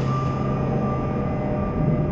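Low, steady ambient drone from a film soundtrack, with a high held tone ringing above it.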